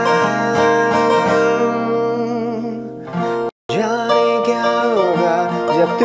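Acoustic guitar (a Granada steel-string) strummed and picked, with a man singing along in held, gliding notes. The sound fades a little and then cuts out completely for a split second just past the middle before the guitar and voice resume.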